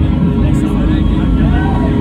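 Concert crowd yelling and cheering over a heavy, continuous low rumble from the hall's sound system.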